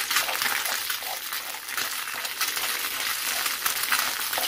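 Egg sizzling in hot coconut oil in a non-stick frying pan, with a wooden spoon scraping through it as it is torn into bits. There are frequent small crackles and scrapes over a steady sizzle.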